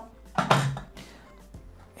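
A plastic measuring cup set into the lid of a Thermomix food processor: one short knock about half a second in, under faint background music.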